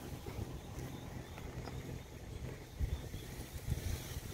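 Wind buffeting the microphone outdoors: an uneven low rumble that comes and goes, with a faint hiss above it.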